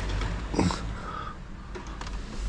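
Steady low rumble in a car cabin, with a short breathy noise about half a second in.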